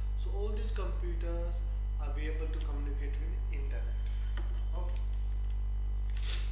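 Steady low electrical mains hum, the loudest thing throughout, from the recording's audio chain, with a thin steady high whine above it and a faint voice underneath.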